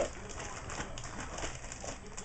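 Faint bird cooing in the background, with light rustling of small items being handled.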